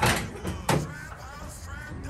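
Hood latch of a 1954 Mercury being released and the steel hood lifted: a metallic clunk at the start and a second sharp clunk less than a second later.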